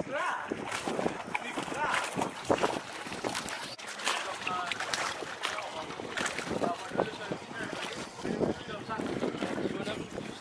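Speedboat moving across open, choppy sea: a steady rush of wind and water, with snatches of unclear voices.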